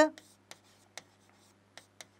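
Stylus tip tapping against an interactive display's screen while a word is handwritten on it: a few short, sharp taps about half a second apart.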